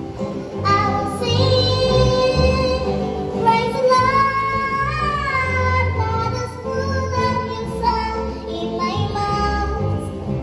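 A young girl singing solo into a microphone over steady instrumental accompaniment, in several phrases with a long wavering held note about halfway through.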